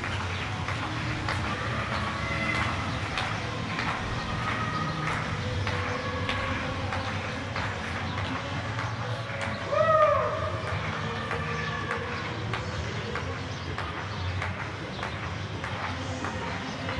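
Scattered hand-clapping from neighbours across the surrounding apartment blocks, with occasional calls or whistles. About ten seconds in, one louder call rises and falls in pitch.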